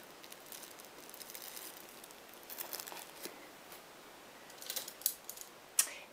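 Faint handling sounds: soft rustling and small clicks as straight pins are pushed through a starched crocheted bell and its tissue-paper stuffing into cloth. The clicks come in small clusters about halfway through and near the end.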